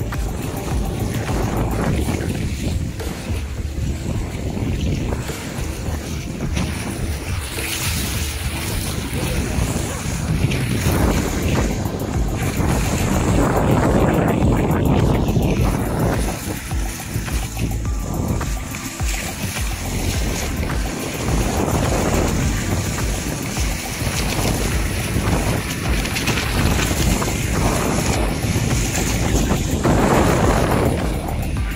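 Continuous rushing, rumbling noise of a ride down a glass water slide, with water and wind buffeting the microphone and surging louder and softer as the slide curves.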